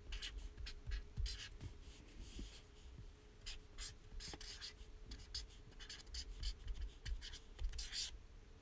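Pen scratching in quick, irregular short strokes as someone writes and draws, faint, over a low steady hum.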